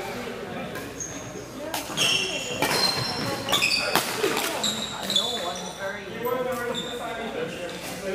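Badminton rally: a series of sharp racket strikes on the shuttlecock, about one every half second for a few seconds from near the start, with sneakers squeaking briefly on the wooden floor, all echoing in a large hall.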